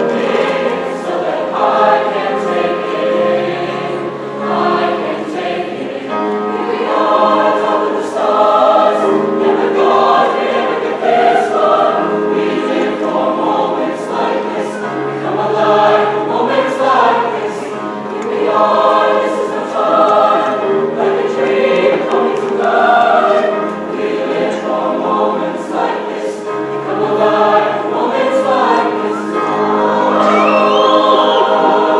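Large mixed high-school chorus singing a pop-style song in phrases that swell and fade, with piano accompaniment, in a reverberant gymnasium.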